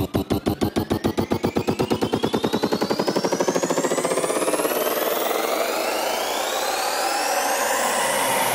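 Electronic dance music build-up: a drum roll that speeds up until the hits blur into one continuous roar-free wash, under rising synth sweeps climbing steadily in pitch, the whole gradually getting louder.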